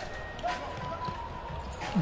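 Arena sound of a basketball game: low crowd noise with a few thuds of the ball bouncing on the court, and a thin steady tone in the middle.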